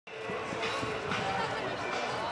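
Indistinct voices of people talking, with a few short low thuds in the first second or so.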